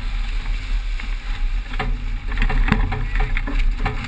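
Racing sailboat sailing fast in strong wind: a steady low wind rumble on the microphone and water rushing along the hull, with a few sharp knocks about two and three seconds in.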